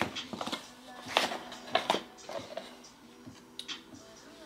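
Cardboard and paper packaging being opened and handled, with a few sharp crinkles and taps. The loudest come a little over a second in and again just before two seconds, with more light taps near the end.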